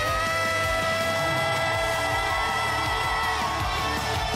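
Live rock band music: a male singer holds one long, steady note for about three and a half seconds over the band's drums, then lets it go.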